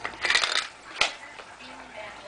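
Hard plastic toy parts clattering and clicking as they are handled: a quick rattling cluster near the start, then one sharp click about a second in.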